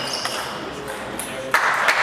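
Table tennis rally: the celluloid ball clicks off bats and table while shoes give short high squeaks on the sports-hall floor. About one and a half seconds in, voices break in suddenly as the point ends.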